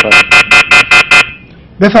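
A telephone ringing with an electronic trill: a buzzing tone pulsed about five times a second for just over a second, then cutting off.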